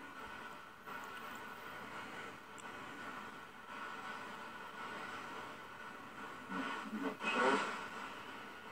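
Steady radio static hiss from a P-SB7 spirit box scanning, with a brief faint voice-like fragment near the end.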